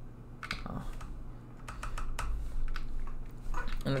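Computer keyboard typing: irregular key clicks as code is typed.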